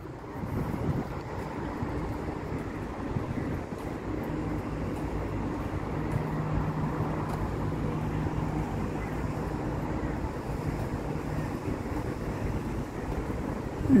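Steady road traffic noise from an expressway, with wind on the microphone. A low steady hum joins in a few seconds in and fades away near the end.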